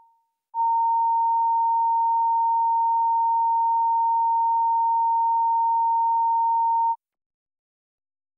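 A steady, pure electronic test tone, one unchanging high pitch, begins about half a second in and cuts off suddenly about a second before the end: a line-up tone on a broadcast holding feed. The fading tail of a previous tone dies away at the very start.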